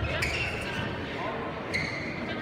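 Badminton hall ambience: sports shoes squeaking briefly on the court floor, a couple of sharp knocks, and indistinct voices echoing in the large hall.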